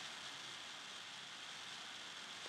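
Faint, steady hiss of microphone noise and room tone, with no other sound.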